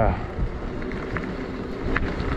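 Steady riding noise of a fat-tire e-bike on wet, slushy pavement: tyres rolling through the wet surface, with a low rumble and wind on the microphone.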